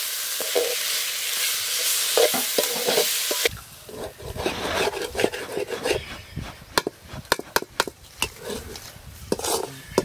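Hand grinding stone crushing green chillies, tomato and onion on a stone slab: a steady gritty scraping that stops suddenly about three and a half seconds in. Only scattered light clicks and taps follow.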